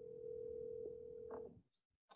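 Faint telephone ringback tone of an outgoing call, heard through the phone line. One steady tone that cuts off about a second and a half in.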